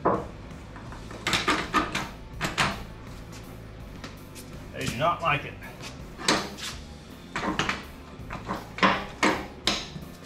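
Steel truck chassis on small caster dollies being shoved sideways across a concrete floor: uneven clusters of clunks and scrapes as the casters fight the sideways push.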